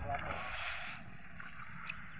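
Wind rumbling on the microphone, with a faint voice at the start and a short hiss about half a second in.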